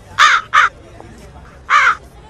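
Three harsh crow caws: two quick ones close together near the start and a third about a second and a half in.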